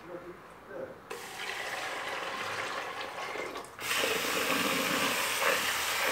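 Kitchen tap running into a pot of lentils as they are rinsed by hand, a loud even rush that starts suddenly about four seconds in. A softer steady hiss comes before it, after a few light knocks at the start.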